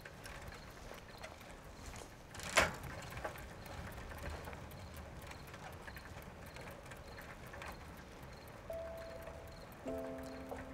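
Scattered hard clacks of footsteps on a paved street, with one sharper knock about two and a half seconds in and a faint regular chirping behind. Held music notes come in near the end.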